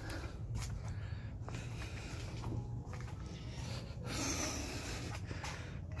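A person breathing close to the microphone, with a swell of breath about four seconds in and a few faint handling clicks.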